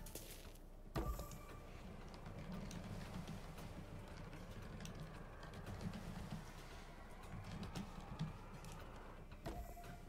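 Faint online slot-game sound: a low, steady hum while the reels spin through free spins, with a short click about a second in.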